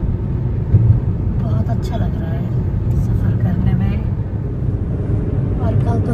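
A car driving at speed, heard from inside the cabin: a steady low rumble of road and engine noise.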